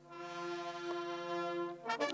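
Military wind band, brass and saxophones, holding one sustained chord as a musical salute, fading away near the end.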